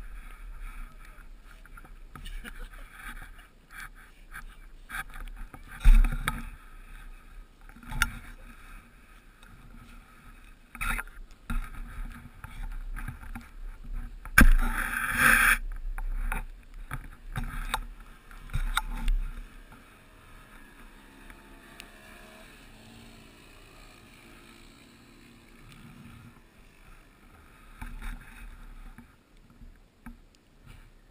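Handling noise of a camera lying in snow and brush: rustling, scraping and knocks against the microphone, with a louder scraping rush about halfway through, then quieter.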